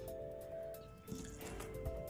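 Soft background music with sustained notes that change pitch in steps.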